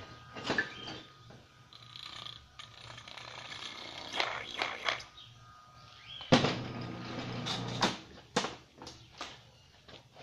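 Scattered knocks, clunks and rattles of metal parts and tools being handled on a steel workbench, with a louder, longer clatter about six seconds in.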